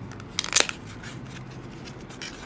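Card packaging being opened by hand: a short burst of crisp clicks and crackles from paper and card about half a second in, then a few faint ticks.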